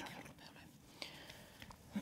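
Faint breathing and mouth noises from a speaker pausing between sentences, over quiet room tone, with a small tick about a second in.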